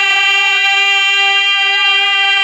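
Harmonium holding one steady, sustained note between sung lines of a Bhojpuri birha, with no drumming or singing over it.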